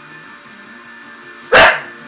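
English Bull Terrier giving a single loud, short bark about one and a half seconds in, over guitar music.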